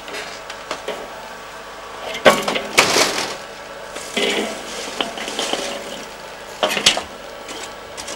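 Wood and charcoal fire in a metal chimney fire starter crackling and snapping, with louder rushes and clatter about two and four seconds in as the burning fuel is disturbed and throws up sparks.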